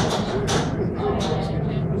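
Go-kart running, a steady low hum under the noise of the ride, with a brief voice about half a second in.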